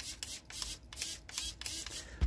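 A quick run of small sharp clicks, several a second, from a Radiomaster MT12 transmitter's momentary trim switch being pressed up and down, with the bench servo it now drives moving to each end of its travel.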